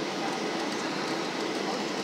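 Steady cabin noise inside a Boeing 737-700 on final approach: an even rush of engine and airflow noise with no change in level.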